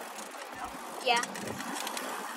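Steady rushing noise of a bicycle ride, air and tyres rolling on pavement, with a girl's short 'yeah' about a second in.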